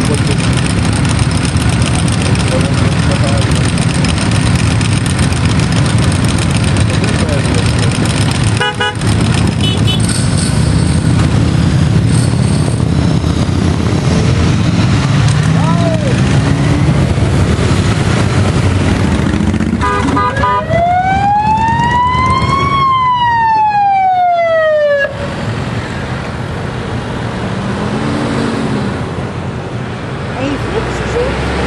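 Engines of a slow convoy of motorcycles and road vehicles running steadily as they pass. Emergency-vehicle sirens give a couple of short blips, then one long wail that rises and falls again over about five seconds in the second half.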